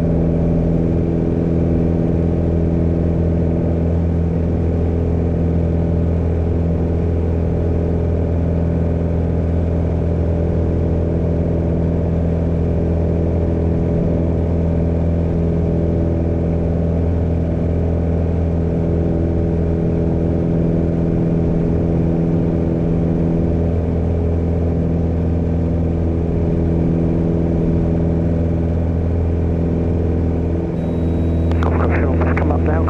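Piper Warrior II's four-cylinder Lycoming engine and propeller running steadily at climb power, heard from inside the cockpit, with an even, unchanging drone.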